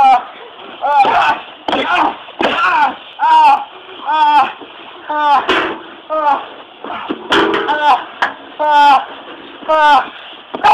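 A fairly high voice calling out in short, repeated cries, roughly one a second, with no words that can be made out.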